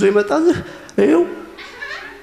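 A man speaking into a handheld microphone in two short, emphatic phrases, one at the start and one about a second in.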